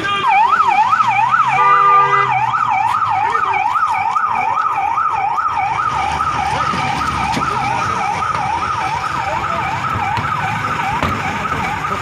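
Police vehicle's electronic siren on a fast yelp, rapidly rising and falling, with a car horn sounding briefly about two seconds in.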